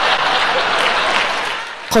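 Gala audience applauding in reaction to a presenter's on-stage gaffe, the applause dying away near the end.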